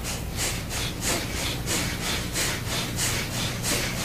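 Bellows breathing ('fanning the fire'): rapid, forceful breaths pumped in and out in an even rhythm of about four a second.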